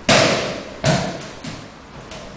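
A person thrown onto a padded mat in an aikido breakfall: two heavy thuds under a second apart as the body lands and hits the mat, then a lighter one.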